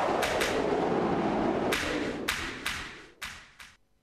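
Tail of an electronic closing theme: a sustained wash of sound struck by sharp, ringing hits, which fades out near the end.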